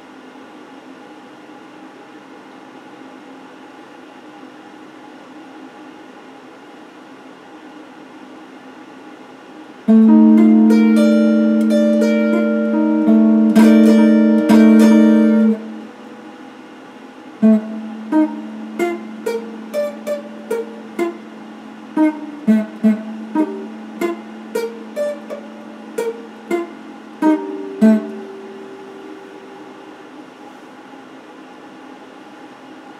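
Red electric guitar being played. A steady low hum fills the first ten seconds. Then a loud chord rings with picked notes for about six seconds, followed by a held low note under a run of about twenty quick plucked notes.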